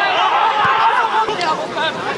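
Several voices of players and spectators at a football match shouting and talking over one another, with a brief knock about two-thirds of a second in.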